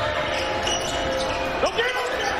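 Basketball dribbled on a hardwood court over steady arena noise.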